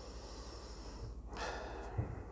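A man's breath: a short, noisy breath through the nose about a second and a half in, over a low steady hum.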